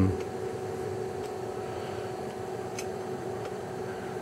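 Steady hum of a running oscilloscope's cooling fans, an even whir with a faint steady whine in it.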